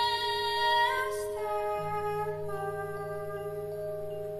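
Woman singing with a live Latin jazz band. A long held sung note ends about a second in; the accompaniment carries on in sustained tones, with a new bass note near the middle.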